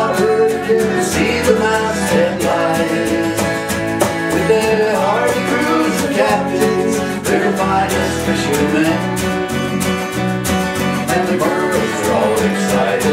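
Small folk band playing a Newfoundland song, with strummed acoustic guitar, electric bass, a steady cajon beat and keyboard, and voices singing over it.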